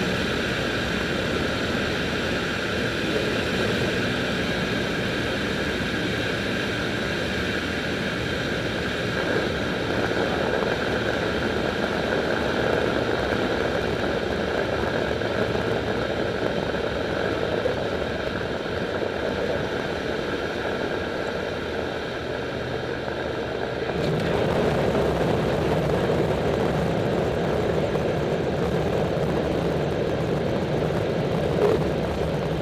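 Douglas DC-7's four Wright R-3350 radial piston engines and propellers droning steadily, heard from inside the cockpit. About 24 seconds in the sound shifts abruptly, becoming louder and deeper.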